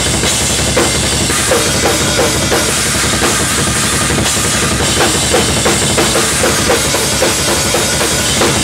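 Acoustic drum kit played hard and fast: bass drum, snare and toms hit in quick succession under a continuous wash of ringing cymbals.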